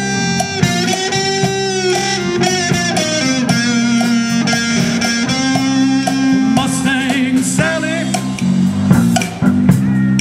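Live band playing a blues-rock groove, with electric guitar and bass guitar over drums. This is an instrumental stretch with no singing.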